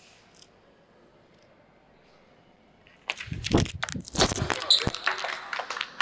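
A quiet room for about three seconds, then the thud of a gymnast landing a backward somersault on a hard floor, followed at once by an audience clapping and cheering.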